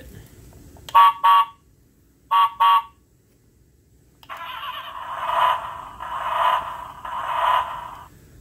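Electronic sound effects from a toy Ford F-150 pickup's small speaker. First come two quick double horn honks. Then, after the roof button is pressed, a recorded engine rev plays in three surges about a second apart.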